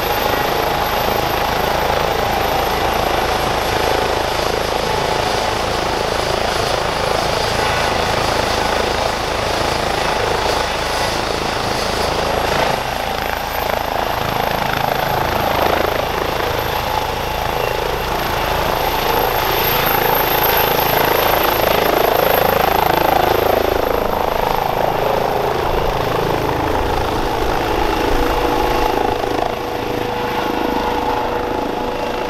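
Airbus H135 helicopter's twin Pratt & Whitney PW206B3 turboshafts and main rotor running at take-off power as it lifts off and climbs away. It makes a loud, steady rotor noise with a thin high turbine whine that rises a little in pitch about halfway through, and it is loudest a few seconds after that.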